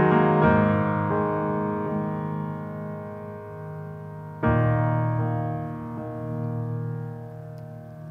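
Grand piano played solo: slow chords, one struck near the start and a fresh one about four and a half seconds in, each left to ring and fade away.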